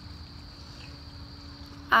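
Outdoor background ambience: a steady high-pitched tone and a low steady hum over a low rumble, with a brief spoken 'ah' at the very end.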